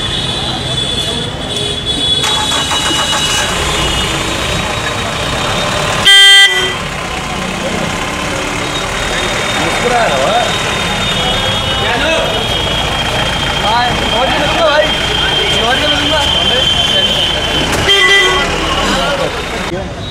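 Outdoor street noise with people talking and traffic, and a very loud, short vehicle horn blast about six seconds in; a fainter horn sounds near the end.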